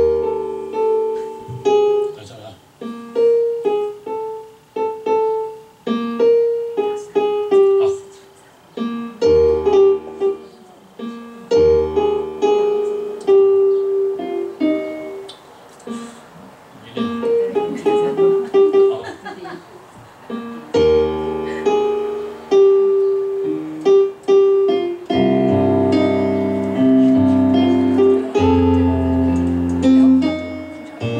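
Korg Kross electronic keyboard played with a piano sound: chord accompaniment with bass notes in phrased passages, growing fuller and louder about 25 seconds in.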